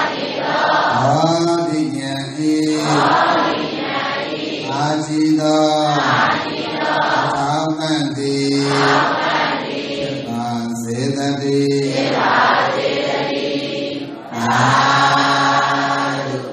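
Buddhist chanting of Pali verses: voices intoning slow, held phrases of a second or two, with short breaks for breath between them.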